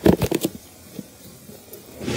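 Latches of a plastic hard case clicking open: a quick run of sharp clicks in the first half second, then only faint handling.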